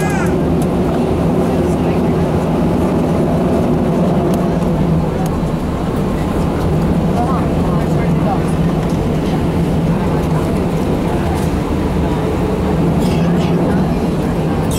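Airbus A319's twin jet engines running at taxi power, heard from inside the passenger cabin as a steady low hum.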